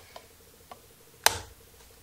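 Gold metal ring mechanism of a Kikki-K medium planner being clicked open: a couple of faint ticks, then one sharp snap about a second in as the rings spring apart.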